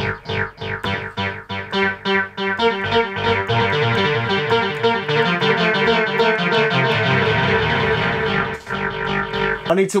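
Analog synthesizer notes played through a 1982 Powertran digital delay line. The repeats stack up into a dense, continuous pattern of overlapping echoes, which drops away near the end.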